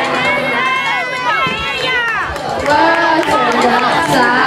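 A group of children shouting and yelling over one another, with high cries that slide down in pitch in the first half.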